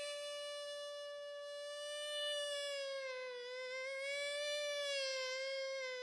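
Hichiriki, the Japanese double-reed pipe, holding one long note that sags slightly in pitch about three seconds in and then returns.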